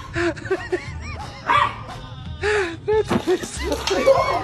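A small dog barking in a string of short, sharp barks, with music underneath.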